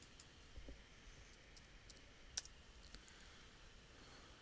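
Faint computer keyboard and mouse clicks: a handful of separate taps, with one louder click about two and a half seconds in, over near-silent room tone.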